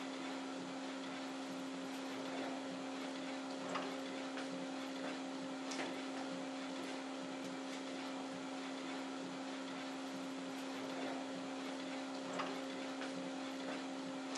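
Epson ColorWorks CW-C6520A colour inkjet label printer printing slowly in its high-quality 1200×1200 dpi mode, the label feeding out as it prints: a steady mechanical hum with a few faint clicks.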